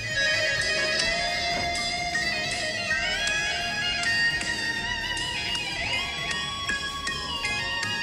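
Physically modelled electric guitar from the GeoShred app, played on a touchscreen: a lead line of sustained notes with smooth pitch slides up and down between them.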